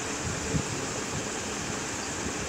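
Steady rushing background noise, with a soft knock about half a second in.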